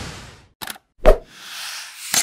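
Logo-animation sound effects: a whoosh fades out, then a short click, then a deep thump about a second in, which is the loudest part. A second whoosh swells near the end.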